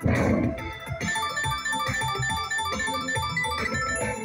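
Ultimate Fire Link slot machine's electronic bonus sounds: a loud burst as the free-game reels land, then a quick run of short chiming notes as a line win is counted up.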